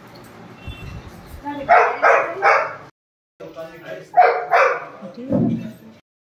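A dog barking: three sharp barks in quick succession about two seconds in, then a short break and two or three more barks over faint background murmur.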